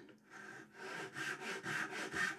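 Japanese pull saw cutting down into the end grain of a board, a soft rasp repeating with each short stroke, a few strokes a second, starting about a third of a second in.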